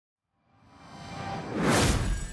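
A whoosh sound effect swelling up from about half a second in to a loud peak near the end, landing with a low hit, over faint music: an intro stinger for a logo reveal.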